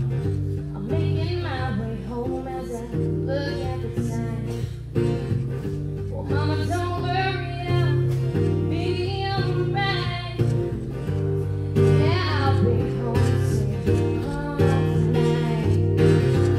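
A woman singing with her own strummed acoustic guitar, the sung phrases coming and going with short breaks while the guitar plays on steadily.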